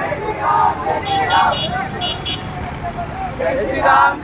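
Men's voices calling out over the steady running of many motorcycle engines and street traffic. Several short high beeps sound near the middle.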